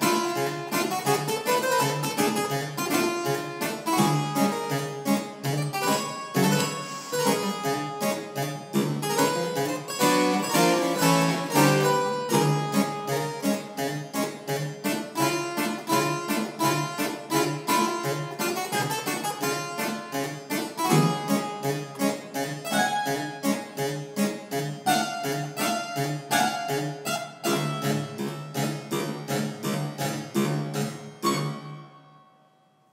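A fast, rhythmic dance played on an Italian one-manual harpsichord built by Lorenzo Bizzi, with rapid plucked notes over a repeating bass.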